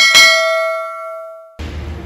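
Notification-bell chime sound effect from a subscribe-button animation: one bright bell ding that rings out and fades, then stops abruptly about a second and a half in.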